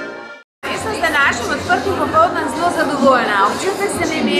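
Diatonic button accordion music cut off within the first half second. After a brief gap, voices talking and chattering in a large hall fill the rest.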